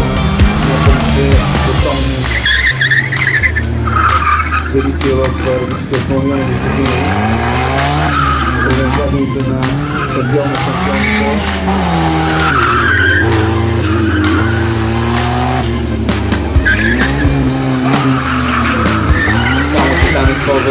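Racing buggy's engine revving up and falling back again and again as it is driven hard through tight turns, with its tyres squealing in several short bursts.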